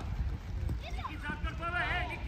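Voices calling and shouting across a youth football pitch, several high-pitched calls overlapping, loudest near the end, over a low steady rumble.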